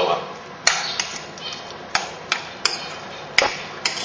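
A spoon knocking and scraping against a glass mixing bowl while stirring a thick mash, giving about eight sharp, irregular clinks.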